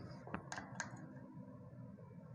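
Light clicks of a test-lead clip being handled and clipped onto the motor's terminal wires, a few in the first second.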